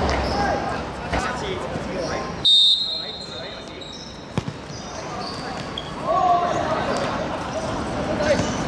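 A referee's whistle gives one short high blast about two and a half seconds in, signalling the free kick. About two seconds later a football is kicked once, a sharp thud on a hard outdoor court. Players' voices call out throughout.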